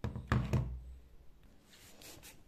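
Two quick dull knocks with a low rumble, about half a second in, as a clothes iron is handled and set down on newspaper on a table.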